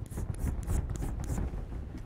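Chalk on a blackboard, scraping and tapping in short, uneven strokes as a figure is drawn.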